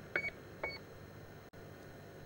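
Two short, faint electronic beeps about half a second apart from the airship's onboard emergency rapid deflation device (ERDD), signalling that the system is working.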